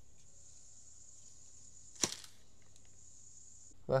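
A single sharp click about halfway through, over a faint, steady high-pitched hiss.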